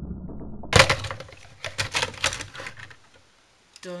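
Plastic TV housing cracking and snapping as it is prised apart from the CRT chassis: one loud sharp crack just under a second in, then a quick run of smaller cracks and clicks.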